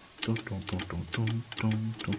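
Line 6 Helix tap-tempo footswitch clicking under a finger about twice a second, tapping in the delay tempo for the song. Between the clicks, short low voiced notes follow the same beat.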